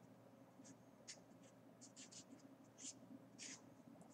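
Felt-tip marker writing on paper: faint, short scratching strokes, several in quick succession.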